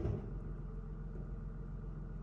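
A steady low background hum, with a brief soft low bump right at the start.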